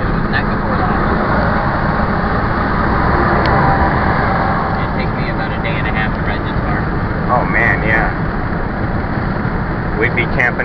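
Steady road, tyre and engine noise inside a vehicle cab at highway speed.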